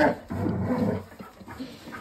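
A dog attacking a stuffed scarecrow decoration: a sharp knock right at the start, then under a second of loud, low dog noise mixed with the rustle of the scarecrow's cloth being shaken, fading to quieter scuffling.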